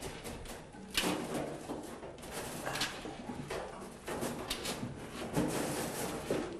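A 1963 VW Beetle's old main wiring harness being pulled out through the car body: the wires rustle and scrape in a series of short, uneven pulls.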